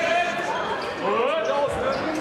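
Several voices shouting and calling over one another in a sports hall during a ball game, with a ball bouncing on the court.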